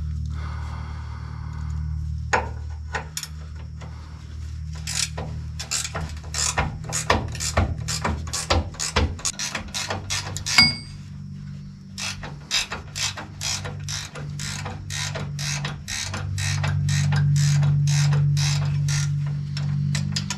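Hand ratcheting wrench clicking as it is swung back and forth to loosen a bolt under a truck, about two to three clicks a second with a short pause partway through. A steady low hum runs underneath.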